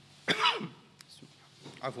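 A man clears his throat once with a short, harsh cough about a third of a second in, interrupting his reading at a microphone.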